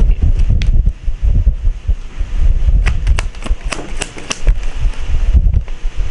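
Wind buffeting the microphone, a loud uneven low rumble, with a few sharp clicks of tarot cards being handled and drawn from the deck.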